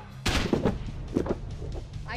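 A sudden heavy thud about a quarter second in, then a few softer knocks, as a man collapses face-down onto an inflatable air track.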